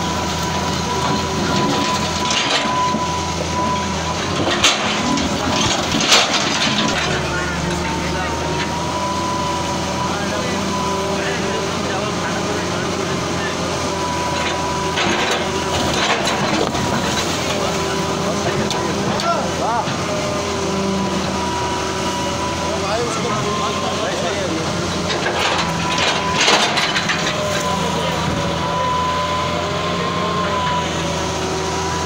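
Hydraulic excavator demolishing a concrete-and-brick house: the engine runs steadily while the bucket breaks and knocks down masonry. Several sharp crashes of falling concrete and brick come about 5 and 6 seconds in, around 15 to 16 seconds and near 26 seconds, over a steady high whine and background voices.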